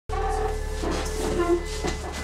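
A steady low hum with a held tone, and people's voices talking in the background. A voice starts to speak near the end.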